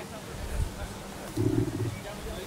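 Dog growling once, a low steady rumble lasting about half a second, starting around one and a half seconds in.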